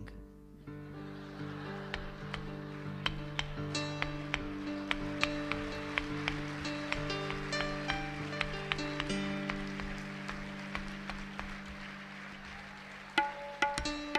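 Musicians tuning up: tabla being tapped over a held drone of several notes that changes pitch a few times, with a stream of short ringing taps on top. Louder notes break in about a second before the end.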